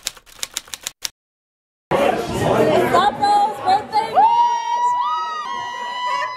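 Typewriter-style clicking sound effect, about seven clicks a second, for the first second, then a short silence. From about two seconds in, loud party noise with women's high-pitched voices holding long, drawn-out cries.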